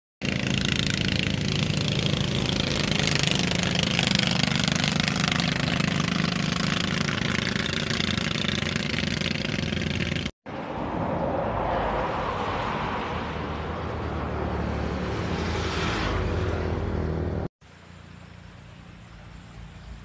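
Motor vehicle engine running steadily with wind and road noise, heard from on board while moving. The sound breaks off abruptly at about ten seconds and again near the end, after which it is much quieter.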